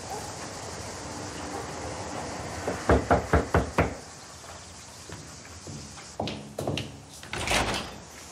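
Five quick knocks on a wooden door about three seconds in. A few seconds later come softer clicks and handling sounds, then the door's latch and the door opening near the end.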